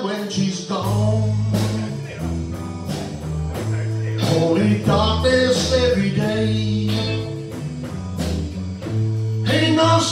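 Live band playing: electric guitars, electric bass and drum kit. The bass holds long, low notes about a second each under regular drum hits.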